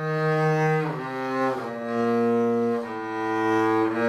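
Double bass played with the bow: slow, sustained notes stepping down in pitch, a new note about every second with short slides between them. The passage is played all on the G string, shifting position up and down the one string.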